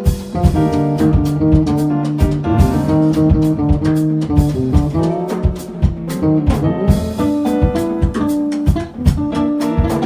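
Jazz trio playing live: keyboard chords, electric bass guitar and a drum kit with busy cymbal and drum strokes throughout.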